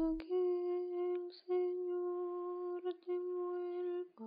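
Slow background music: a voice humming a melody in long held notes, each lasting about a second, near one pitch, with short breaks between them.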